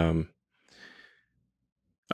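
A man's short hesitant "um" close to the microphone, followed about a second in by a soft breath.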